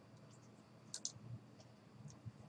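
A computer mouse button clicked once about a second in, a short sharp click, with a few fainter ticks around it over near-silent room tone.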